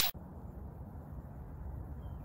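A whoosh cuts off right at the start, followed by a steady low background rumble and hiss of outdoor ambience with no distinct events.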